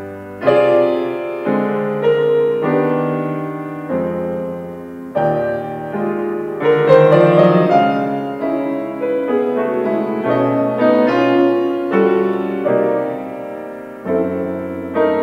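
Grand piano played solo: a slow, gentle nocturne of chords struck about once a second, each left ringing. The middle of the passage is busier and a little louder.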